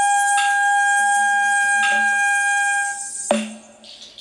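Shinobue (Japanese bamboo transverse flute) holding one long steady note that stops about three seconds in, the closing note of the tune. Short percussive strikes come about every second and a half, the loudest one just as the note ends.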